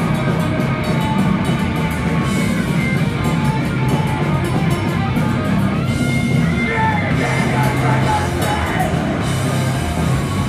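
Live crust punk band playing: distorted guitars, bass and a drum kit with cymbals, loud and dense throughout, the cymbals dropping out for a moment about six seconds in.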